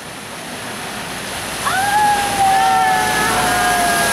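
Pickup truck ploughing through deep floodwater, its wheels throwing up a steady rush of spray that grows louder as it comes closer. Partway through, a long car horn sounds and is held, sliding slightly down in pitch as the truck passes.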